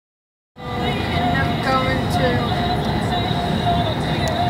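Silence, then about half a second in a loud, steady rumble starts abruptly, like the cabin noise of a moving vehicle. Faint wavering voice-like sounds or squeaks run over it.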